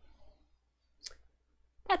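A single short click about a second into a quiet pause, then a woman begins to speak near the end.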